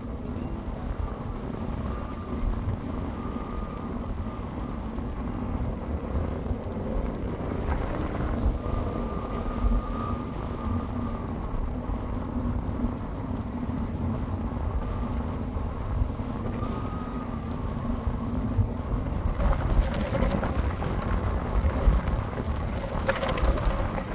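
Wind rushing over the microphone and tyre noise from an e-bike rolling along asphalt, with a faint high whine from its electric motor that comes and goes. The rush grows rougher and louder near the end.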